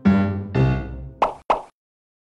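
Short keyboard jingle: two piano notes ring out, followed about a second in by two quick cartoon pop sound effects.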